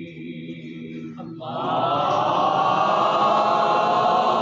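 A single male voice chanting softly, then about one and a half seconds in a congregation of men joins in loudly, chanting together in unison.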